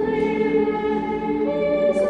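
Choir singing in a large, reverberant church, holding long notes and moving to a new chord about one and a half seconds in.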